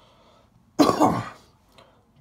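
A man coughs once about a second in, a short burst with a second push right after it.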